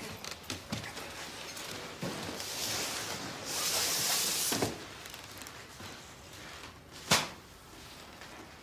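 A large wrapped futon rustling as it is carried into the room and set down, with a few light knocks. One sharp click comes about seven seconds in.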